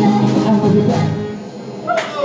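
A live band with bass and guitar plays, and the music dies away about a second and a half in.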